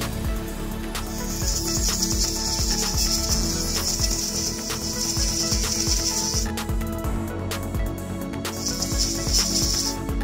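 Electronic background music with the high hiss of a small pen-style rotary tool grinding the metal terminal of a test-lead clip. The hiss starts about a second in, stops a little past the middle, and returns near the end.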